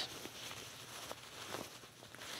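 Faint rustling and soft handling noises of a sewn fabric pocket being turned right side out by hand.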